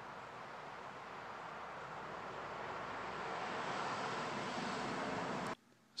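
Steady rushing outdoor background noise, slowly growing louder, that cuts off abruptly about five and a half seconds in.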